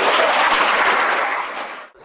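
Dassault Rafale fighter's twin Snecma M88 jet engines in a loud, rough roar as it flies its display. The roar eases slightly, then cuts off abruptly near the end.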